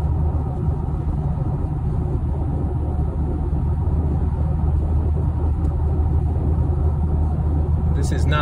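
Steady low rumble of road and wind noise inside a Ford Mustang's cabin at highway speed, picked up by a hand-held phone; it sounds like wind.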